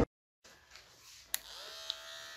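After a brief silence, a click, then a cordless hair clipper's motor starts and settles into a steady buzz about three quarters of a second later.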